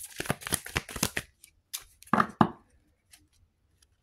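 Handling noise: a quick run of light clicks and rustles, then two louder knocks a little after two seconds, followed by a few faint ticks.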